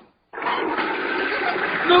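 Toilet flushing: a steady rush of water that starts just after the beginning and runs on, with a man's shout of "No" starting over it at the very end.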